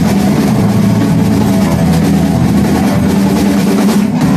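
Live rock band playing: distorted electric guitar and drum kit in a dense, loud, unbroken wall of sound with a held low note underneath.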